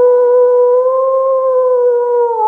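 A wolf howling: one long, loud howl held on a steady pitch.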